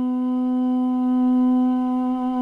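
Armenian duduk holding one long, steady low note.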